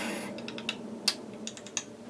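A short breath out at the start, then a run of small, irregular clicks and taps from hands handling small objects such as makeup containers, caps or a phone.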